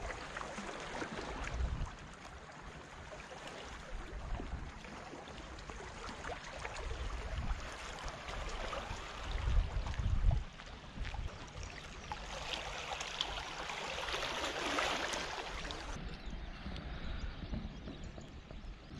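Seaside ambience on a rock breakwater: water lapping and gurgling among the stones, with gusts of wind on the microphone rumbling unevenly, loudest about ten seconds in.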